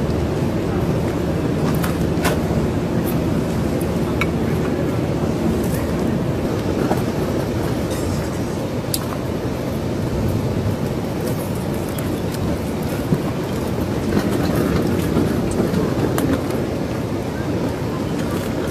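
A steady low rumble with wind noise on the microphone, and a few faint clicks.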